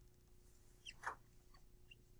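Dry-erase marker drawing on a whiteboard, giving a few faint short squeaks about a second in and one near the end, with near silence between.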